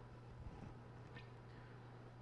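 Near silence: a faint, steady low electrical hum, with one small tick a little over a second in.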